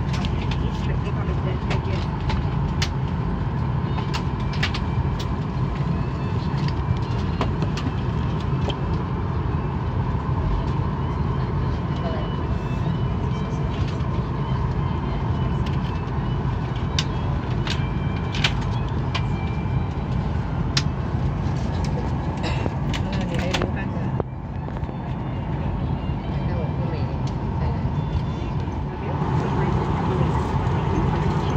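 Steady cabin noise inside a parked Boeing 737-800: a low rumbling hum of the air supply with a faint steady whine, scattered with small clicks and paper rustles as the seat-pocket safety card is handled.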